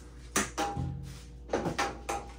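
Objects being moved by hand among tools and boxes: a few sharp knocks and clinks, once early on and twice near the end, with a faint thin ringing tone lingering from about a second in.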